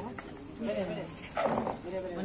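People talking, with one short, sudden noisy burst about one and a half seconds in.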